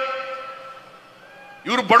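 A man speaking through a public-address system: the end of a phrase lingers and fades away, a short pause, then he speaks again near the end.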